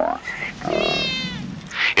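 Two wavering, meow-like cries: a short one right at the start and a longer one about a second long that falls slightly in pitch.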